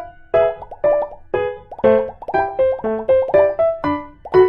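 Light, bouncy background music: a tune of short, separate notes, each sharply struck and fading quickly, about three a second.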